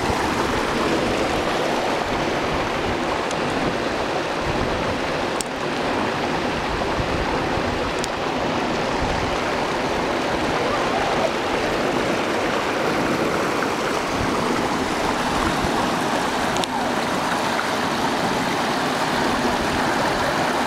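Water flowing out of a lake spillway's outlet and down the concrete channel over rocks: a steady rushing noise, with a few faint clicks.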